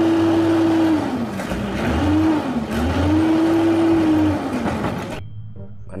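Automated side-loader garbage truck's diesel engine revving up and down three times, the pitch climbing, holding and falling back, as it drives the hydraulic arm lifting a wheelie bin, over a steady mechanical din. It cuts off suddenly near the end.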